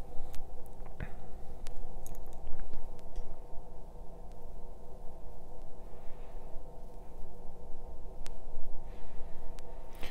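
A watercolour brush making a few short, faint scratchy strokes on paper while dark grass blades are painted in, over a steady low electrical hum.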